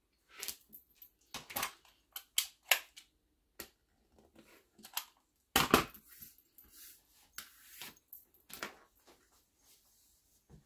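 Rotary cutter run along an acrylic ruler, slicing through paper-backed fusible web (Heat N Bond Lite) in several short, crisp strokes over the first few seconds. A louder knock comes near the middle as tools are set down on the table, followed by softer handling of the ruler on the cutting mat.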